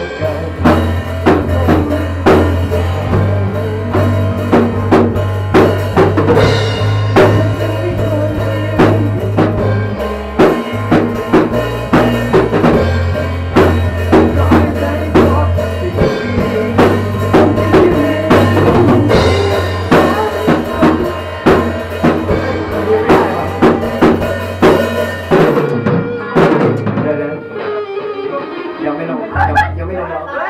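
A rock band playing live: drum kit with bass drum and snare on a steady beat, electric guitars and a bass guitar holding low sustained notes. The drums and bass drop out about four seconds before the end, leaving quieter, thinner playing.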